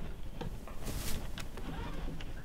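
Lecture-room background noise with a low hum, scattered small clicks and a brief rustle about a second in, as the audience moves about.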